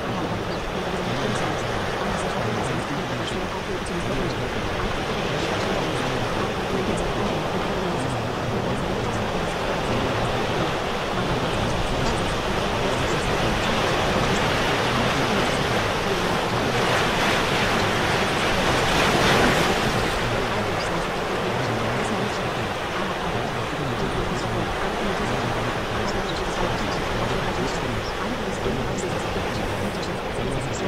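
Steady ocean surf washing in, swelling louder about two-thirds of the way through. Faint sped-up, twice-layered spoken affirmations are buried under the waves.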